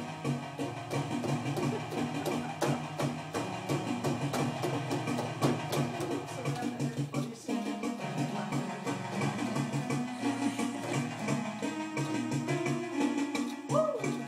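Home electronic organ played by a small child pressing clusters of keys with both hands, sustained note clusters over a steady percussive beat and a repeating bass pattern.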